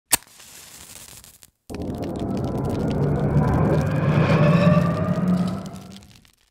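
Logo-intro sound effect: a sharp crack, then, after a brief pause, a deep rumbling swell with slowly rising tones. It builds for about four seconds and fades away near the end.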